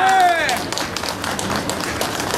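A voice ending on a falling call as a stage song finishes, then scattered hand clapping from a small audience.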